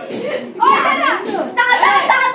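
People talking, a child's voice among them, getting louder about half a second in.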